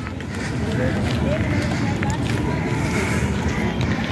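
Wind buffeting the microphone: a steady, loud low rumble with faint voices of people in the background.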